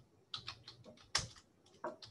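Typing on a computer keyboard: a quick run of key presses, with one louder keystroke about a second in.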